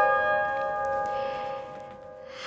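Plucked lyre strings ringing on after a chord, several notes sustaining together and slowly fading away.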